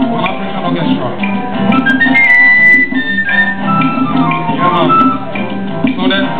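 Live acoustic band music: acoustic guitars over conga drums, with a wind instrument playing a long high held note and then falling glides in the middle.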